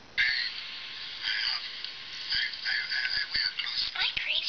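The soundtrack of a video clip playing through a handheld device's small built-in speaker. It starts abruptly just after the beginning and sounds thin and tinny, with almost no low end.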